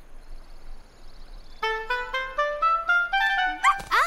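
A clarinet playing a quick rising scale, one short note after another, starting about a second and a half in. Near the end it gives way to a swooping slide up and down in pitch.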